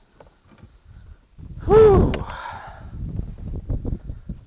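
A man lets out one loud, breathy wordless exclamation, an "ohh" whose pitch rises and then falls, about a second and a half in. A short sharp click follows just after it, with low rumbling noise through the rest.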